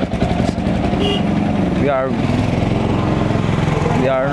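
A motor vehicle engine idling steadily, a low even hum that runs on unchanged.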